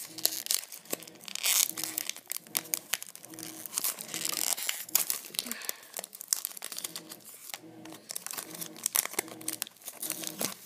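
Foil wrapper of an SP Authentic hockey card pack being torn open and crinkled by hand: a dense, irregular run of crackles and rustles.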